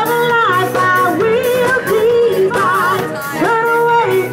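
Live pop band through a PA, with a woman singing lead over keyboard, guitars, bass and drums. She holds long notes with vibrato, sliding up into a sustained note near the start and another near the end.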